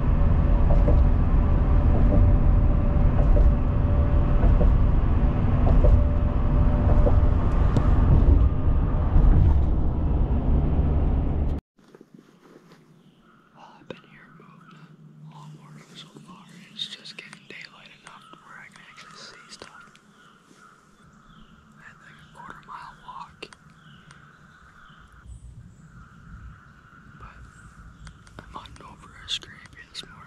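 Steady road and engine noise inside a moving car's cabin, a loud low rumble that cuts off suddenly about twelve seconds in. After that comes a man's quiet whispering.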